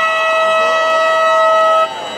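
An air horn blown in one long, steady blast of fixed pitch that cuts off abruptly near the end.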